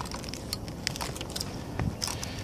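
Footsteps scuffing and clicking on gritty asphalt roof shingles: a few short, uneven scrapes, the last near the end the strongest, over a steady low background rumble.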